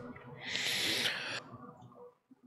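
A man coughing once into his fist, a harsh, breathy burst lasting about a second.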